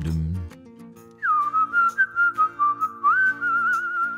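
A tune whistled over soft, sustained backing music. It starts about a second in with a quick downward glide, moves through short stepped notes, and ends on a wavering, trilled note.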